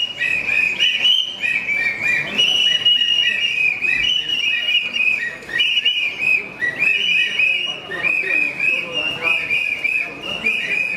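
Many whistles blown over and over by a crowd of marchers: overlapping high-pitched blasts that go on without a break.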